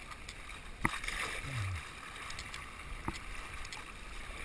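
River water rippling and splashing around a kayak as it is paddled through a shallow riffle. Two sharp knocks stand out, one about a second in and one near the end.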